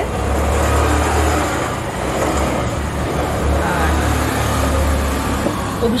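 Road traffic on a nearby street: the steady low rumble of a passing vehicle's engine with tyre and road noise.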